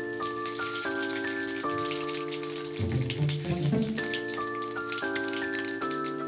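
Spices and dried red chillies sizzling and crackling in hot oil for a tempering, a dense patter of fine pops, under background music of held, stepwise-changing chords.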